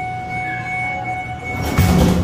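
Schindler hydraulic elevator's car doors sliding shut, closing with a thud near the end, over a steady high tone.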